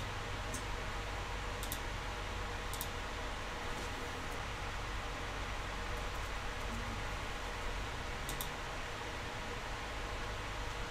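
Steady low room hiss with a faint hum, broken by a handful of short computer mouse clicks, several heard as quick double clicks.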